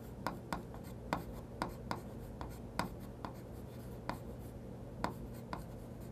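Chalk writing on a chalkboard: a string of short, sharp, irregular taps and scratches as characters are written stroke by stroke, faint.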